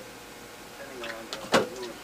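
A few short clicks as small objects are handled, the loudest about one and a half seconds in, with a faint low murmur of a man's voice shortly before.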